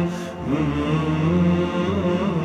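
Chanted salavat in Turkish ilahi style: voices holding long notes, with a brief dip in the first half second before a new note slides up.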